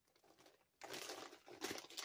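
Plastic poly mailer bag crinkling as it is handled, starting about a second in.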